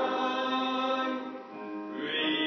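Congregation singing a hymn together in long held notes, with a brief dip between phrases about one and a half seconds in.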